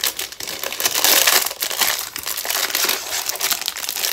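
Thin clear plastic bag crinkling and rustling as a rolled diamond-painting canvas is handled and slid out of it, irregular crackles throughout.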